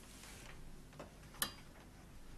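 Two sharp clicks about half a second apart, the second much louder with a brief metallic ring.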